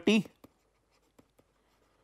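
Faint ticks and scratches of a stylus writing by hand on a pen tablet, a few short strokes.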